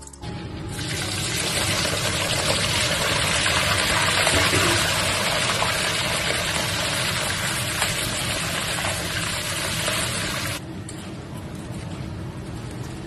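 Starch-coated small shrimp deep-frying in a wok of hot oil: a loud, steady sizzle that starts as they go in. It eases and goes duller about ten and a half seconds in. The sizzle is the moisture in the shrimp boiling off in the oil.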